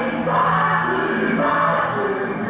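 Yosakoi dance music played loud, with a chorus of voices; the vocals surge twice.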